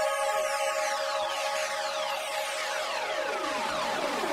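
Electronic jingle music: a held synth chord under a string of tones sliding down in pitch one after another. The chord drops away about three seconds in, while the falling tones carry on.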